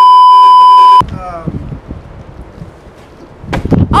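A loud, steady electronic test tone, the beep that goes with TV colour bars, used as an editing transition. It lasts about a second and cuts off suddenly, leaving a quiet outdoor background with faint voices.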